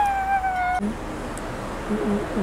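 A woman's voice letting out one high, drawn-out note that rises and then holds for under a second at the start, a cheerful sung or exclaimed sound of happiness.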